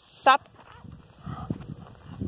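A woman's short, sharp vocal call to a dog on a leash, with a wavering pitch, then faint footsteps scuffing on a dirt track.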